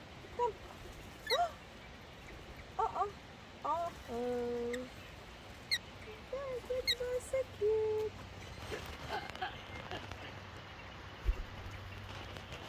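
Wild Australian ringneck (twenty-eight) parrots calling close by: a few short, sharp chirps that sweep steeply upward, scattered through, among soft low human coos and murmurs.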